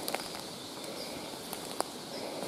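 Quiet birch-wood ambience with faint bird chirps and a few light clicks of footsteps on dry leaf litter and twigs, the sharpest click near the end.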